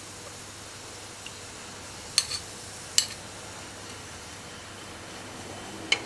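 A metal fork clinking against a metal serving spoon: three short sharp clinks, two about two and three seconds in and one at the very end, over a faint steady hiss.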